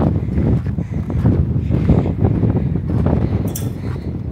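Wind buffeting the camera's microphone: a loud, uneven low rumble, with a short rustle near the end.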